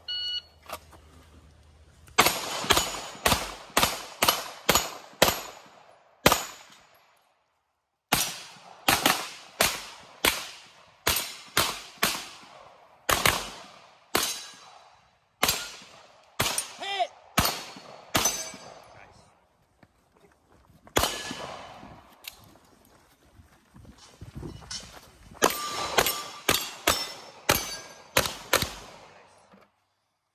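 A shot timer beeps once at the start, and about two seconds later rapid gunfire begins: dozens of sharp shots in quick strings with short pauses between, including pistol fire.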